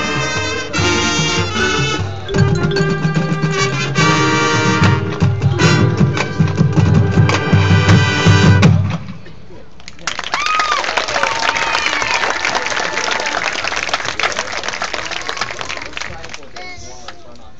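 Marching band brass and drums playing a loud passage with heavy low drum hits, cutting off about nine seconds in. After a short lull the crowd applauds and cheers.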